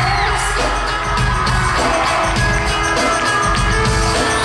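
Live pop band music played loud through an arena sound system, recorded from among the audience: the band comes in with a steady drum beat right at the start. A scream rises from the crowd just after.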